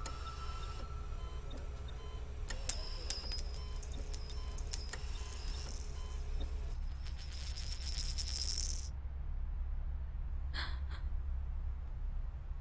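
A metal ring drops, strikes a hard floor and rings as it rolls and wobbles. The rattling grows faster and louder until it stops suddenly, like a coin settling flat, about nine seconds in.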